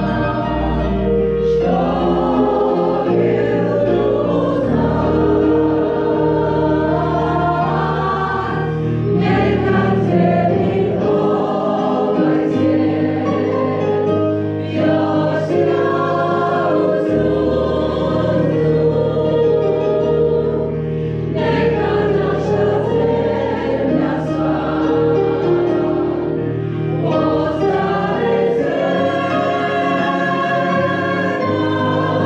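Choral music: a choir singing slow, sustained chords over low held bass notes that change every few seconds.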